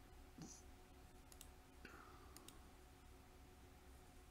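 Near silence: faint steady room hum with a few soft computer-mouse clicks.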